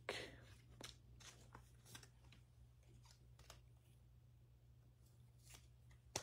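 Near silence: faint scattered clicks and rustles of trading cards being handled and set down on a table, over a low steady hum.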